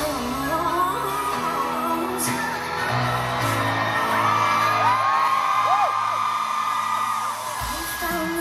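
Live pop song heard from the audience of an arena concert: band and female lead vocal, with whoops from the crowd over the music. The deepest bass drops out for a few seconds in the middle and comes back near the end.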